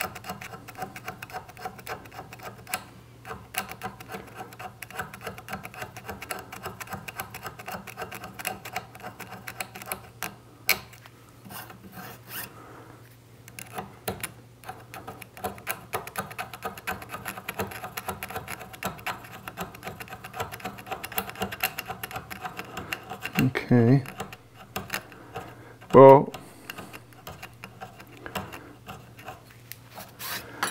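Steel pick scraping groove by groove along a file's teeth to clear out clogged metal filings (pinning the file): a continuous run of fine, quick scratchy ticks. Two brief louder sounds come near the end.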